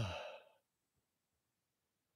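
The tail of a man's drawn-out "uh", falling in pitch and trailing off into a breathy sigh within the first half-second, then near silence.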